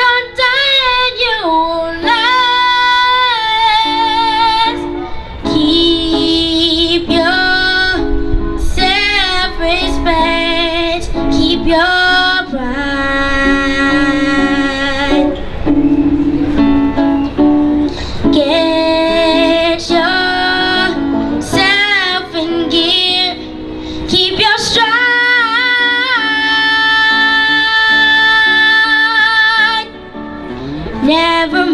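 A young girl singing a slow song into a handheld microphone over an instrumental accompaniment, holding long notes, the longest in the last few seconds.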